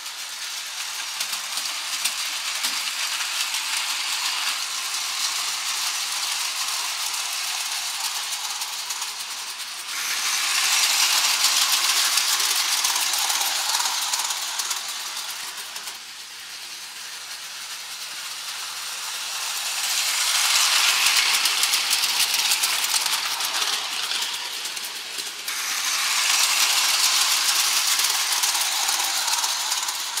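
Hornby O gauge tinplate model trains running on tinplate track, their metal wheels clattering and rattling steadily over the rail joints and points. The rattle swells three times as a train runs close by.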